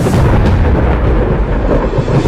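A loud, rumbling thunder-like sound effect, heavy in the low end, laid into the dramatic intro theme music.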